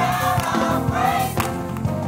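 Gospel choir singing over instrumental accompaniment, with a few sharp percussive strokes.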